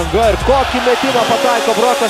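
Excited sports commentator's voice calling a basketball play. Low background music under it cuts out about halfway through.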